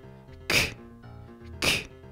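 A man's voice saying the English /k/ sound twice, about a second apart, each a short breathy 'k' as in the 'ck' spelling, over soft background music of steady held notes.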